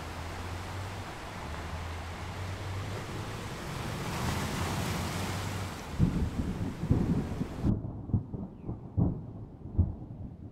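Thunderstorm sound effect: a steady hiss of rain and wind, then, about six seconds in, rolling thunder with repeated low rumbles and cracks. The hiss cuts off suddenly near the eight-second mark, and the thunder rumbles go on.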